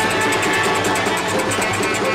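Albanian folk dance tune (valle) played by a small folk orchestra: plucked strings over a quick, steady beat.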